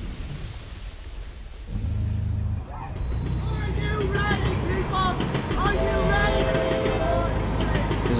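Film trailer soundtrack: a noisy rush over the opening title, fading out, then from about two seconds in a steady low drone with bending, sliding pitched tones above it.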